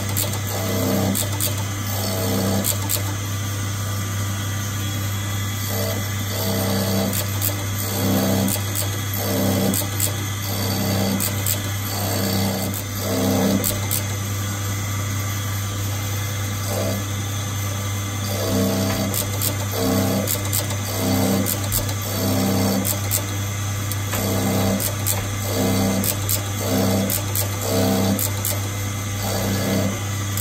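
Jewellery hand cutting machine running with a steady low hum while its spinning cutter wheel cuts a pattern into a 22k gold bangle, the cutting coming in repeated short passes with light ticks of the cutter on the metal.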